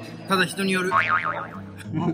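A cartoon boing sound effect, a quick warbling wobble in pitch about a second in, laid over steady background music.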